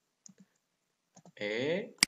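Computer keyboard and mouse clicks: a couple of faint clicks in the first half, then one sharp click at the end as a letter is typed.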